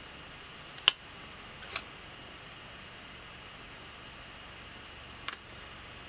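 Two sharp small clicks, one about a second in and one near the end, with a soft brief rustle between, from metal tweezers and a paper sticker being placed and pressed onto a planner page, over a faint steady hiss.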